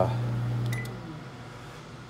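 A steady low hum fades away over the first second or so. Partway through it, a short high beep comes with a few light clicks.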